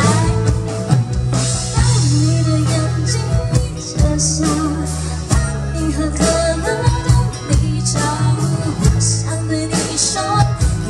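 A woman singing a pop song live into a microphone, backed by a band with guitar and drum kit.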